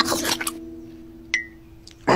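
Cartoon sound effects: a crunchy bite into a nougat cube at the start, over a single held low note that fades slowly. About 1.3 s in comes a sharp click with a brief high blip.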